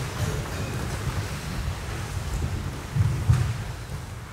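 A group of barefoot karate students moving through kata on a wooden sports-hall floor: a steady low rumble of footfalls and movement, with two dull thuds about three seconds in.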